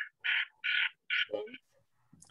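A bird squawking four times in quick succession, harsh short calls, followed by a brief voice.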